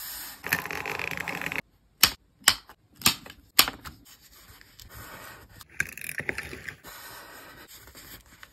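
Sheets of paper being handled and folded up close. A brief dense rustle of paper sliding is followed by four sharp clicks about half a second apart, then more crinkling and a softer rustle.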